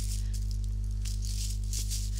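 Dried black beans rattling lightly and irregularly inside a tissue-paper-wrapped glass jar shaker as it is handled, over a steady low hum.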